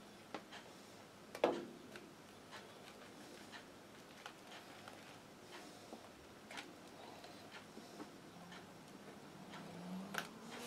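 Faint, scattered light clicks and taps of hands and tools handling a static grass applicator over a foam terrain board, with one louder knock about a second and a half in.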